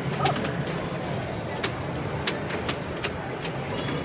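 Wheel of Fortune pinball machine in play: irregular sharp clicks and knocks from the ball striking targets and the flippers firing, over a steady arcade background.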